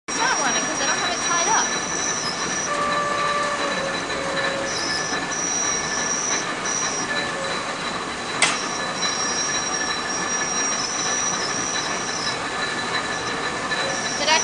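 Belt-driven cotton spinning frames running: a loud, steady mechanical clatter and whir with high squeals that come and go, and one sharp click about eight and a half seconds in.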